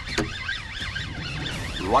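A fishing reel whining under a hooked fish, a high tone that wavers rapidly up and down several times a second.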